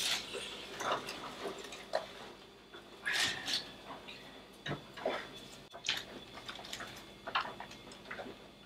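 Plastic vacuum-seal bag crinkling and rustling in short irregular bursts, with a few soft knocks, as cooked ribs are pulled out of it into a bowl.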